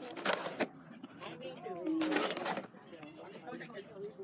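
Faint voices of people talking, with a couple of short rustling noises.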